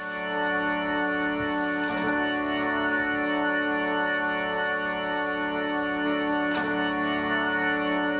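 Music: one organ-like chord held steady with no attack or decay, the instrumental intro of a song before the singing comes in.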